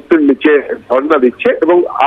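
A man speaking without pause, in the narrow, radio-like sound of a news report.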